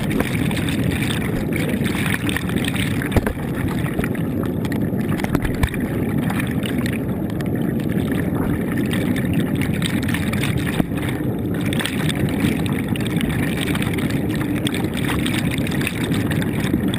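Water noise recorded by a camera held underwater just below the surface: a steady, muffled rush with a few faint clicks.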